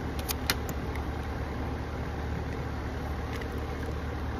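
Steady low outdoor background rumble, with a few short light clicks in the first second as a card is handled.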